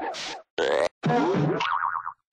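Cartoon sound effects for an animated mascot: three short sounds in quick succession, one with a rising glide, the last ending in a wobbling, warbling pitch.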